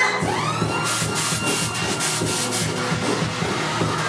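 A CO2 cannon hissing in short blasts over loud club music with a steady bass beat, about a second in, fired on a three-two-one countdown.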